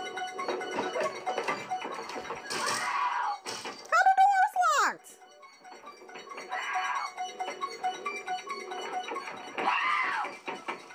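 Horror film soundtrack: a sustained synth score under a woman's intermittent shouts for help. The loudest sound is a long falling cry about four seconds in.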